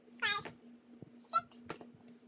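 A young woman counting books aloud in a high-pitched voice, two short drawn-out numbers about a second apart, with light knocks as hardcover books are stacked.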